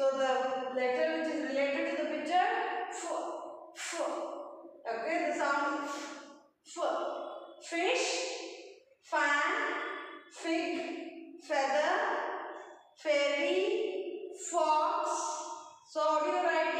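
A woman's voice in short phrases with brief pauses between them; nothing else stands out.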